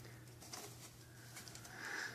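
Faint rustling and small soft clicks of a hand rummaging in a purse among folded paper slips, over a low steady hum, with a soft brief swell of sound near the end.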